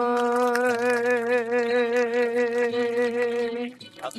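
A man's singing voice holding one long final note of a song, steady at first and then with a widening vibrato, cutting off shortly before the end.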